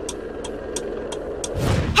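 Car hazard-light flasher ticking evenly, about three ticks a second, over a steady low hum; near the end a rising whoosh swells up.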